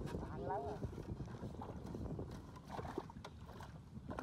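Small Honda step-through motorcycle engine running steadily at a low rumble.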